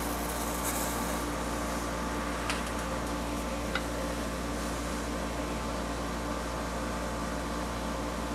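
Steady mechanical room hum with a constant low drone and even tones. Two faint clicks come about two and a half and nearly four seconds in.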